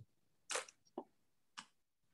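Faint clicking at a computer during a video call: a brief rustle about half a second in, then two sharp clicks, as the screen share is being restarted.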